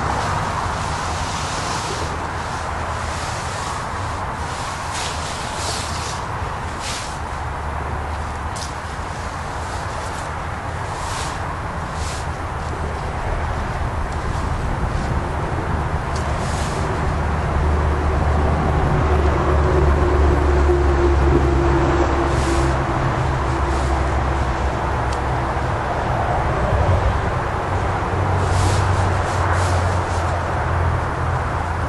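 Nylon tent rainfly rustling and crinkling in short bursts as it is pulled over a dome tent and fastened at the base, over a steady low rumble that swells about two-thirds of the way through.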